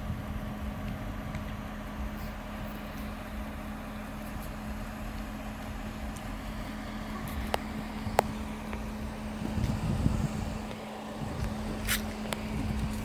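C7 Corvette Stingray's V8 idling, a steady low rumble with a constant hum, swelling briefly near the end. Two sharp clicks about two-thirds of the way through, the second the loudest sound.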